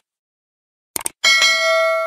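Subscribe-button animation sound effect: two quick clicks about a second in, then a single bright bell ding that rings on and slowly fades.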